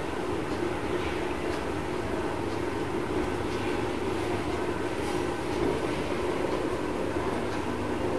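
Steady low rumbling background noise with no clear notes or strokes.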